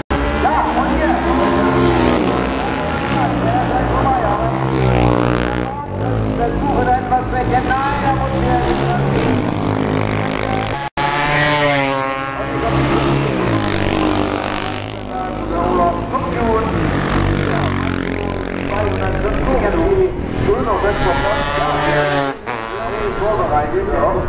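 Classic 500 cc racing motorcycles passing at speed one after another, the engine note swooping in pitch as each goes by, several times over.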